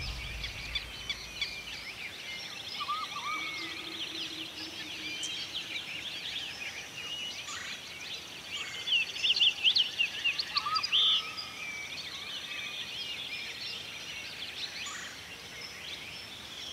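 Outdoor ambience with many birds chirping, trilling and calling at once, several kinds together. The calls grow louder in a flurry from about nine to eleven seconds in.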